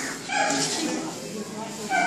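A dog barking, with a couple of short barks.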